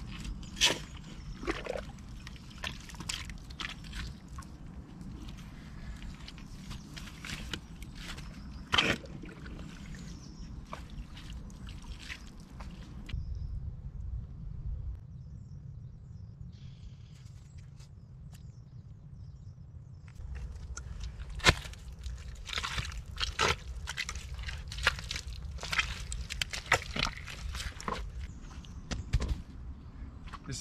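Spade digging in a wet, waterlogged trench: irregular scrapes and chops of the blade working in mud and standing water, with a quieter pause about halfway through before the digging sounds resume.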